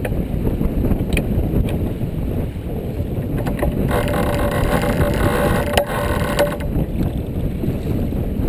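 Wind buffeting the microphone and water rushing along the hull of a sailboat under way. From about four seconds in, a steady pitched hum lasts a couple of seconds, and a few light knocks are heard.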